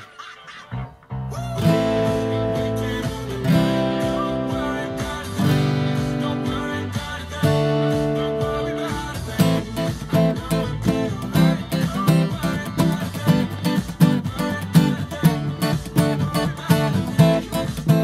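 Acoustic guitar strumming chords, starting about a second in. The first few chords are held and left to ring; from about halfway through they give way to a steady rhythmic strum.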